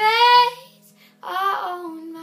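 A young woman singing over a softly played acoustic guitar: a short rising sung note, a brief pause, then a second note held from a little past one second in.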